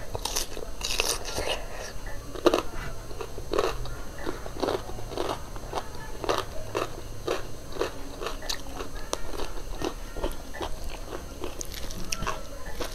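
Close-up chewing and biting of a mouthful of food, with crunchy bites and wet mouth clicks at about two to three a second; the loudest crunch comes about two and a half seconds in.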